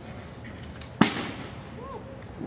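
A single sharp, loud crack from a drill rifle being struck during an exhibition rifle drill, about a second in, ringing off briefly afterwards.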